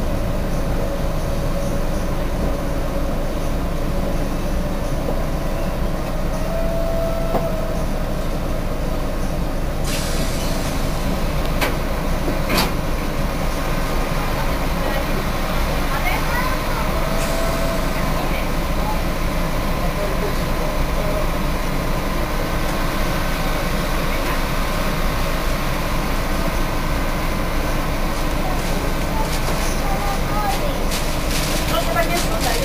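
Cercanías commuter train heard from inside, slowing alongside a station platform and standing there: steady running and machinery noise, with a few sharp clicks about ten to thirteen seconds in.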